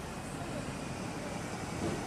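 Steady rumble of road traffic outdoors, a vehicle growing slightly louder.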